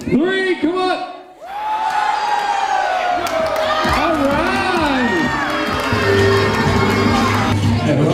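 A crowd of women shrieking and cheering as a tossed bridal bouquet is caught, with a short shout just before it begins. Music comes in under the cheering near the end.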